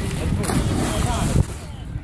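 A person jumping feet-first off a pier into lake water, hitting it with a splash about half a second in, with wind rumbling on the microphone throughout.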